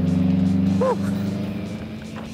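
Rally car engine running at a steady low idle, louder in the first second and then easing off, with one short vocal call a little under a second in.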